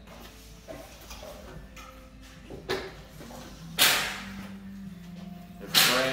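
Three sharp clacks over a faint steady hum, a weaker one a little under three seconds in, then louder ones near four seconds and just before the end, each ringing out briefly.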